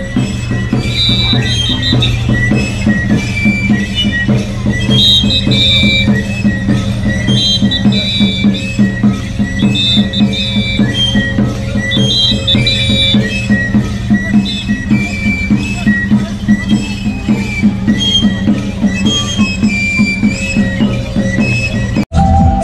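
Traditional Andean dance music: a high flute melody repeating short phrases over a steady drum beat.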